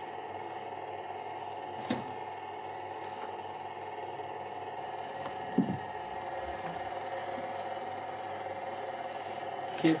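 A steady mechanical hum with hiss runs under the silent film footage. A faint click comes about two seconds in and a short knock a little after five and a half seconds.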